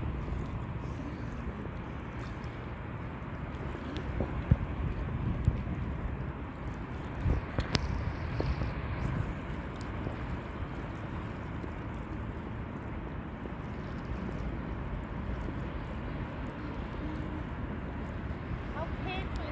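Wind rumbling on the microphone, with a few short knocks about four to eight seconds in.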